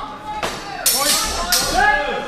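Steel longswords clashing and grinding against each other as two fencers engage, with two loud metallic crashes about a second in and again near the end, each trailed by ringing.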